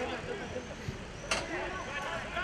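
Players' voices calling out across an outdoor football pitch, several overlapping, with one sharp knock partway through.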